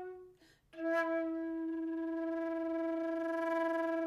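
Solo concert flute: a held note stops, and after a short break a sharp attack begins one long, steady, lower note.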